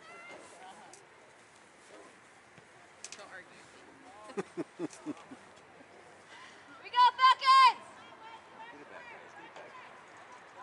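People shouting across a soccer field: a few short low calls around the middle, then three loud, high-pitched yells in quick succession about seven seconds in.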